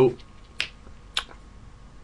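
Two short, sharp clicks about half a second apart.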